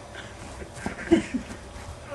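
A few short, breathy human vocal sounds, clustered about halfway through, from a dizzy man as he stumbles and falls onto grass.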